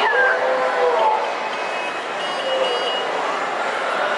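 Indoor play-area babble: overlapping children's and adults' voices with no clear words, with a child's high squeal sliding down in pitch right at the start.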